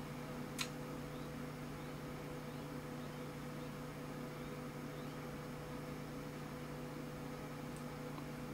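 Room tone with the steady low hum of a running computer, and one short sharp click about half a second in.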